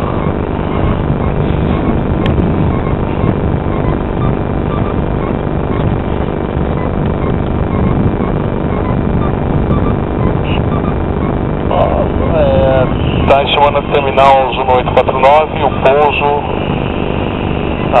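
A steady, engine-like rumble with a faint hum. A voice talks over it in the last few seconds.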